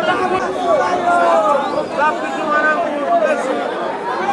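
Crowd chatter: many voices talking over one another at once, at a steady level.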